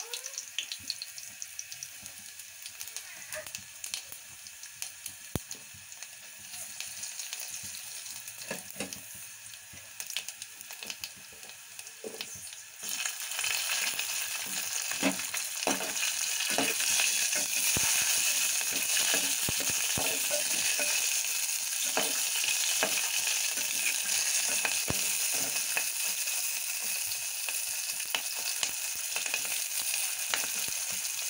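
Tempering spices sizzling in hot oil in a metal pot: garlic frying gently at first, then about 13 seconds in the sizzle jumps much louder as cumin seeds and green chillies go in. From then on a steel ladle clicks and scrapes against the pot as it is stirred.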